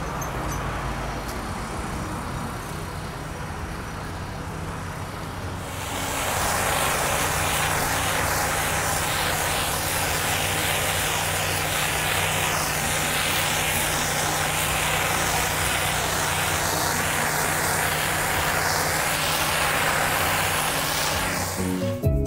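Hot-water pressure washer with its engine running steadily. About six seconds in, the high-pressure spray opens up: a loud, steady hiss of the water jet blasting wet concrete.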